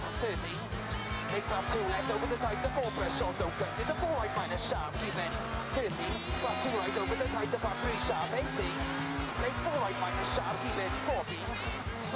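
A song with a steady beat, a stepping bass line and vocals.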